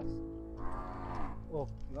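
A cow mooing once for about a second, starting about half a second in, over steady background music.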